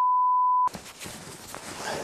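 A steady, pure, high beep tone, a single held note like a censor bleep, that cuts off sharply under a second in. Then comes quieter room sound with light rustling and a couple of soft clicks.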